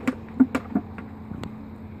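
A few sharp plastic clicks and taps from a spray bottle being picked up and its nozzle twisted, over a steady low hum.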